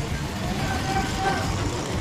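A jeepney driving past close by with its engine running, a steady low rumble amid street traffic noise.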